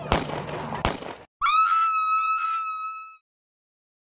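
Two gunshots a little under a second apart, then a long high-pitched scream that rises briefly, holds steady and fades out.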